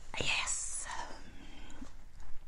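A woman breathing out long and audibly, a breathy, sigh-like exhale without voiced words that fades by about the middle.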